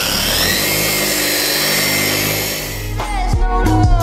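Dual-action polisher running on car paint at a low speed setting, its pitch rising over the first second as it spins up and then holding steady. About three seconds in, music with a beat and vocals comes in over it.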